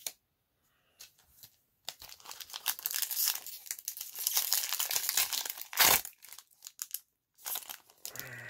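Kaldheim booster pack's plastic foil wrapper being torn open by hand: a few faint clicks, then several seconds of dense crinkling and tearing, loudest about six seconds in.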